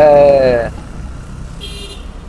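Steady rumble of passing road traffic. At the start, a drawn-out spoken 'ohh' falls slightly in pitch, and a short high-pitched tone comes near the end.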